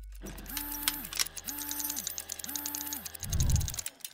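Mechanical sound effects for an animated logo: three short motor whirs, each rising, holding and falling in pitch, over fast ratcheting clicks. A low thud comes near the end, and then it cuts off suddenly.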